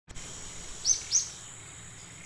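Two short, sharp bird chirps about a quarter second apart, a little under a second in, each falling quickly in pitch, over a steady high-pitched whine.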